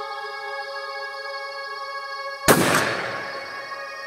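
A single shotgun shot about two and a half seconds in, with a short echoing tail, over steady background music.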